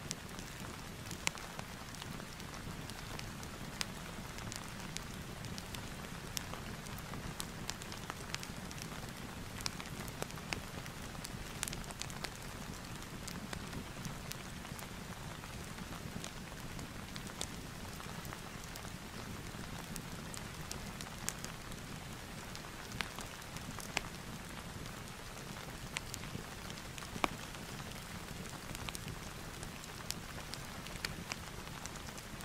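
Steady rain ambience mixed with a crackling wood fireplace: an even hiss with scattered sharp pops.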